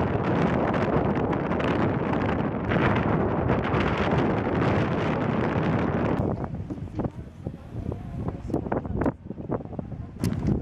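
Strong wind buffeting the camera microphone as a loud, steady rush. About six seconds in it drops to quieter, uneven gusts with a few small knocks.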